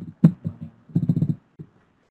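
A person's voice in short, choppy pulses, too broken up to make out as words, breaking off about a second and a half in.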